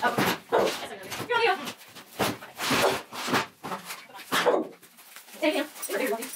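A woman laughing in several short bursts.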